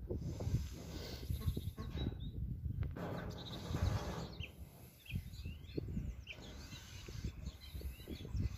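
Hands scraping and pressing loose, dry soil around a transplanted seedling, close by: an irregular run of crunching and rustling that comes and goes.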